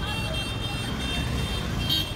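Street traffic noise: motor scooters and other vehicles running, a steady low rumble with a thin, steady high tone over it.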